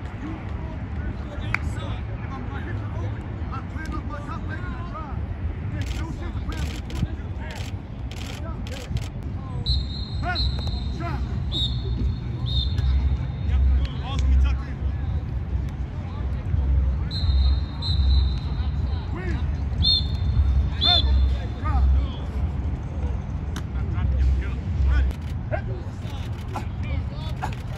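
Outdoor football practice field sound: background voices and calls, and a high whistle blown in several one-to-two-second bursts in the second half. Wind rumbles on the microphone throughout, pulsing louder in the later part.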